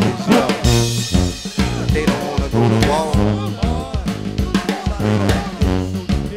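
New Orleans brass band music: a sousaphone bass line under trumpet and horn lines, driven by snare and bass drum. A cymbal crash about a second in.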